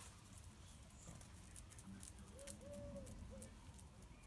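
A dove cooing faintly in the distance: three soft notes, about two seconds in, the middle note the longest. Scattered light ticks and patter sound throughout.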